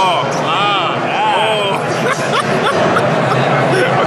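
Men laughing hard over the steady chatter of a busy crowd.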